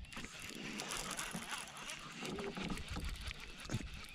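Baitcasting reel being cranked to retrieve a lure, a light, steady ticking whir.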